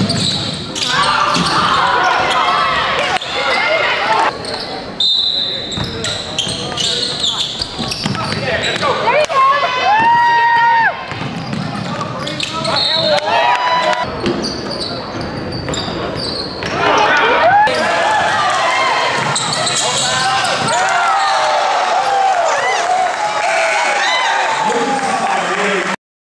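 Live audio of a basketball game in a gym: the ball bouncing on the hardwood court under the shouts and calls of spectators and players, with a reverberant hall sound.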